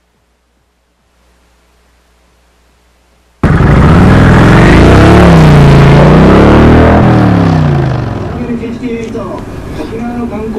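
Sudden, very loud engine-like sound effect, a car engine revving, starting about three and a half seconds in, its pitch sweeping down and back up, then fading after a few seconds as a voice comes in.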